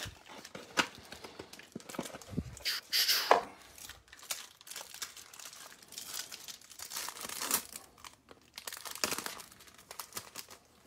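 A foil trading-card pack wrapper being torn open and crinkled by hand, with the cards pulled from it. The irregular rustling is loudest about three seconds in and again around seven seconds.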